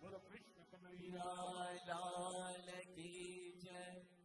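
Man singing a Hindi devotional bhajan over a steady harmonium drone. The music stops near the end.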